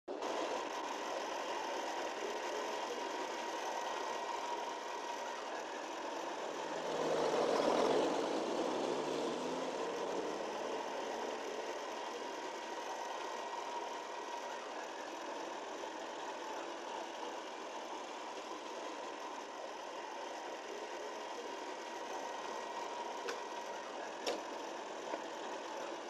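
Steady city street traffic noise, with a vehicle passing about seven seconds in, and a few faint clicks near the end.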